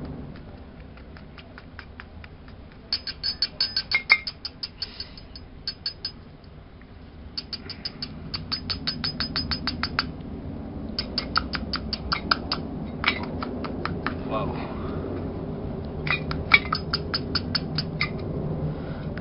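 Rapid runs of light taps, several a second, as a small charred plastic container is knocked against a hard tabletop to shake talcum powder out of it. The taps come in about four bursts with short pauses between.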